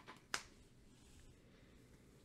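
One short, sharp click of a trading card being laid onto a stack of cards, about a third of a second in; otherwise near silence.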